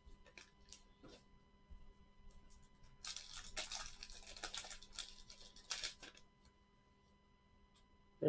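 A 1989 Fleer wax pack being opened by hand: a few faint handling clicks, then about three seconds of crinkling and tearing of the waxed-paper wrapper, which stops about two seconds before the end.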